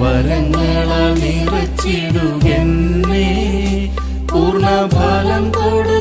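Malayalam Christian devotional song: a voice singing a slow, chant-like melody over a steady low drone.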